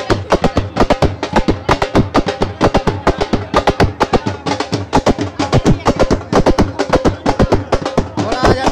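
Loud, fast drumming in a steady dance rhythm, many beats a second, with crowd voices underneath.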